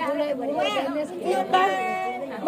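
Women chattering, several voices talking over one another.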